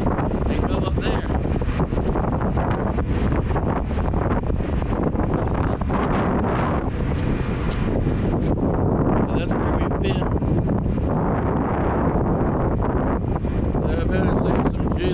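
Wind buffeting the microphone on the open deck of a moving car ferry: a steady low rumble with gusts.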